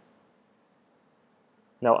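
Near silence: faint room tone, then a man starts speaking near the end.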